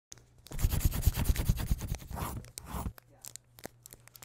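Scratchy, crackling paper sound effect: a dense run of quick scratching strokes for about two and a half seconds, then a few scattered ticks near the end.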